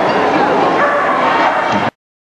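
Dogs barking and yipping over loud crowd chatter in a large hall. The sound cuts off abruptly near the end.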